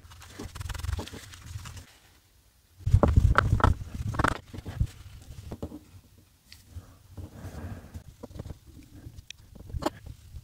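Scrubbing and handling noise as a tissue, then a cotton swab wetted with isopropyl alcohol, is rubbed on a white plastic fountain pen cap to lift an ink stain, with low rumbles from the gloved hands. It goes quiet briefly about two seconds in, then the rubbing is loudest for about a second and a half before turning faint and scattered.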